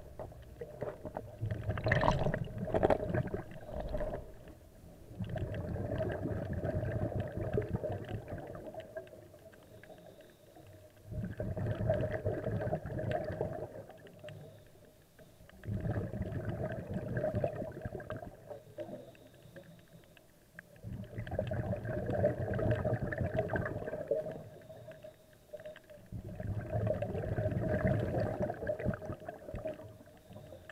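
Scuba diver's exhaled breath bubbling out of the regulator, heard underwater: gurgling bursts of about three seconds that come about every five seconds, with quieter breaks for each breath in.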